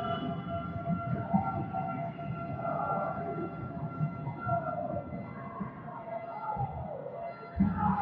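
Sounds of a volleyball rally in an echoing sports hall: wavering, gliding squeaks and calls, with a few dull thumps, the loudest near the end.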